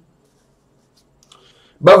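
A man's speech breaks off into near silence, with a faint short click about a second and a quarter in, then his talking resumes near the end.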